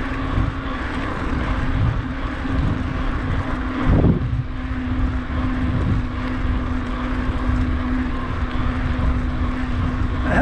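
Wind rushing over the microphone and tyres rolling on tarmac as a mountain bike is ridden at speed, with a steady low hum. A thump about four seconds in.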